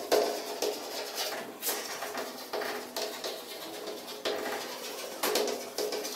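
Chalk writing on a chalkboard: irregular taps and short scratchy strokes as the chalk moves across the board.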